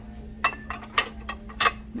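Porcelain leaf-shaped dishes clinking against each other as the top dish is lifted off the stack: several sharp clinks about half a second apart, each with a short ring.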